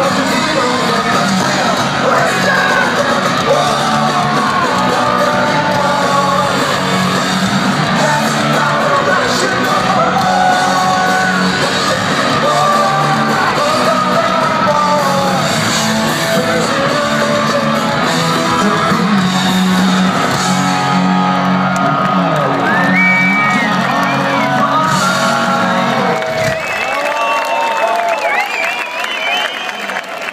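Live punk rock band playing loud, with distorted guitars, bass, drums and a sung vocal, recorded from within the crowd. The song ends about 26 seconds in, leaving the crowd cheering and whooping.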